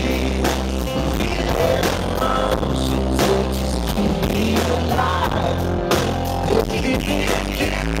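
Live band music at high volume through concert PA speakers, with piano, a heavy steady bass and drums; the recording is fuzzy and distorted from being made close to the speakers.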